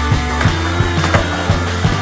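Rock music with a steady beat, over a skateboard rolling on a smooth indoor floor, with a couple of board knocks in the middle.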